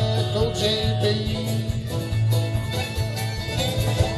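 Live bluegrass band playing an instrumental passage: banjo, fiddle and strummed acoustic guitar over an upright bass line, with a steady beat.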